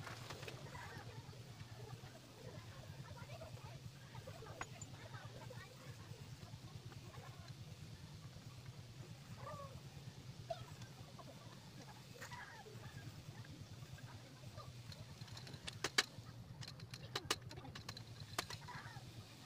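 A steady low hum with faint bird calls. Near the end comes a quick run of sharp metallic clicks: bicycle parts knocking together as a stem and spacer are fitted onto a suspension fork's steerer tube.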